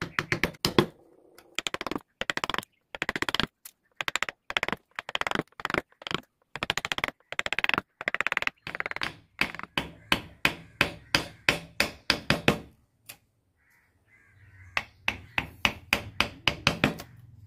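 Steel carving chisel pushed by hand through wood, paring out a relief: a quick series of short cutting strokes, about two or three a second, pausing briefly near the end before starting again.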